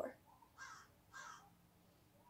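Two short, faint caws from corvids in a tree outside the window, about half a second apart.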